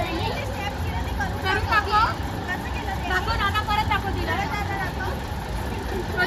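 Overlapping chatter of a group of children and adults, with no single clear speaker, over a low steady rumble.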